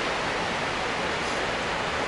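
Steady rushing of a nearby stream or waterfall, an even hiss of running water with no breaks.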